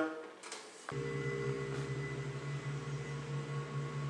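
A steady electrical hum made of several fixed tones starts suddenly about a second in and holds evenly.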